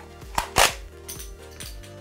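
Plastic magazine of a toy foam-dart blaster snapping into the magazine well: one sharp click followed by a louder snap about half a second in. A few light ticks follow as the small shells, loaded without darts to hold them by friction, slip out of the magazine.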